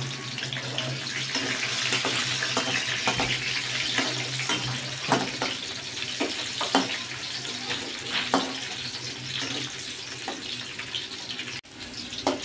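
Shallots, garlic, candlenuts and whole red chillies sizzling steadily in hot oil in a wok over a medium flame, with scattered clicks of a metal spatula stirring against the wok and a faint steady low hum underneath.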